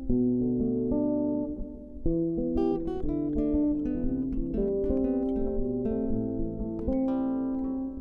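Background music played on acoustic guitar: held chords that change about once a second, with picked higher notes joining about two and a half seconds in.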